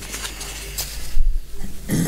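A dull low thump on the table microphone a little over a second in, the loudest moment, then a man's short throaty noise just before he starts speaking.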